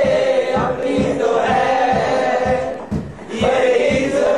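A group of male voices singing together in chorus over a steady low beat of about three strokes a second, with a brief lull about three seconds in.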